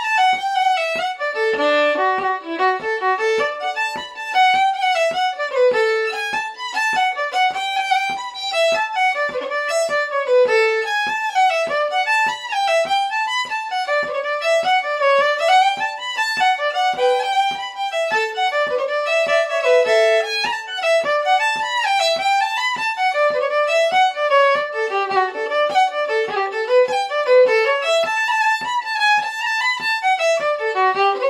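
Solo fiddle playing a set of Irish traditional jigs.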